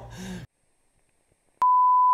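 Colour-bars test tone: a steady, single-pitch beep that starts suddenly with a click about one and a half seconds in, after a faint voice sound and a second of silence.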